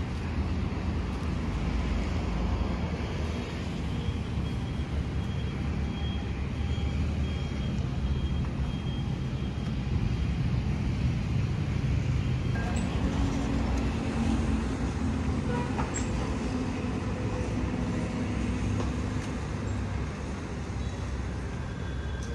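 Steady low rumble of outdoor background noise, like road traffic, with a low hum joining for several seconds after the middle.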